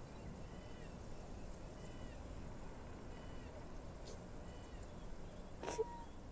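Faint animal calls in a quiet outdoor background: a short arched call repeating about every second and a third, four times. A sharp click comes near the end.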